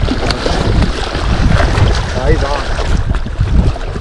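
Wind buffeting the microphone, a rough low rumble, over water lapping and splashing at the rocky shoreline. A short spoken sound comes in about the middle.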